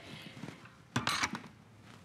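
Quiet room tone with one short clack and rustle about a second in, from a tablet being handled at a laptop table.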